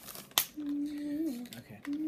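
A sharp click, then a person humming two drawn-out closed-mouth "mmm" notes. The first rises a little and then drops.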